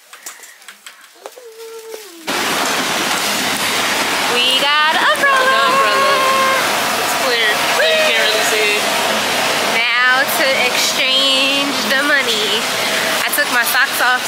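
Steady hiss of rain on a wet city street, cutting in suddenly about two seconds in after a quieter shop interior, with voices talking over it.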